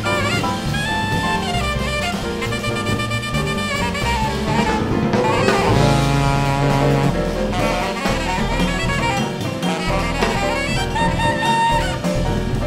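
Jazz quartet playing live: an alto saxophone leads with melodic lines over piano, double bass and drum kit.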